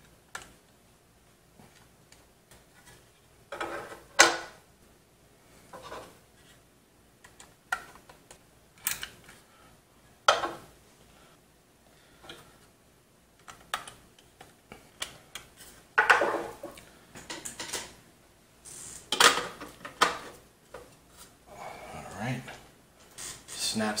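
Irregular clicks, light knocks and scrapes of a screwdriver, small screws and a 2.5-inch drive being worked into a drive tray, busiest in the second half, ending with the tray being pushed back into the PC case.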